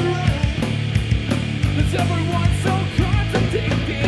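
Live rock band playing loudly: electric guitars and a drum kit, in a punk-rock style.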